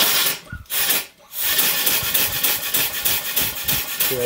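Full-size marine steam engine run on compressed air. A burst of air hiss comes as the valve is opened and falters twice. From about a second and a half in, the engine runs with a steady hiss and rapid, even exhaust beats as it blows condensed water out of the cylinder drains and exhaust.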